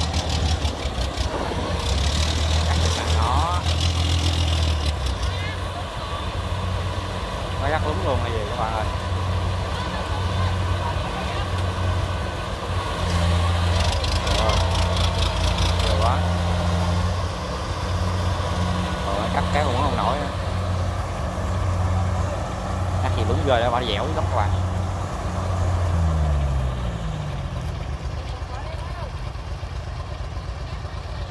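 Kubota DC70 combine harvester's diesel engine running steadily under load as it cuts and threshes rice, its engine note dropping in pitch about four seconds before the end. Voices call out now and then.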